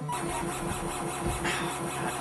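Modular synthesizer driven by a step sequencer, playing a buzzy, rapidly pulsing tone, with a low swell about a second in.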